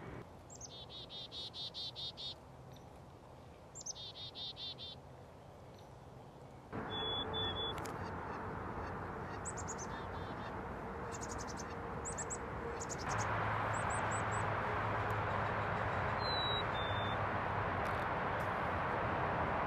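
Wild birds calling: two rapid trilled series of high chirping notes in the first five seconds, then scattered shorter call series and a few single whistled notes. Beneath them runs a steady rushing background noise that steps up abruptly twice, about seven and thirteen seconds in.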